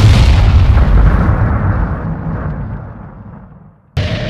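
An explosion sound effect: one loud boom at the start that rumbles away over about four seconds, the high end fading out first.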